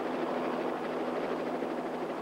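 Light helicopter in flight: a steady drone of rotor and engine noise with a low, even hum underneath.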